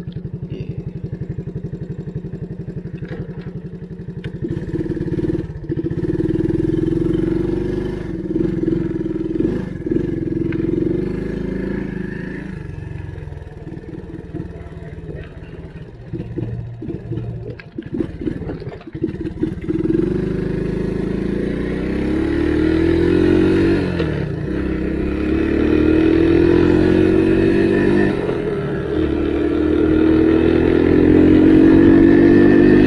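1985 Honda ATC 125M three-wheeler's single-cylinder four-stroke engine idling steadily for the first few seconds. It then revs as the trike pulls away and rides off, its pitch rising and falling again and again as it accelerates and eases off, louder toward the end.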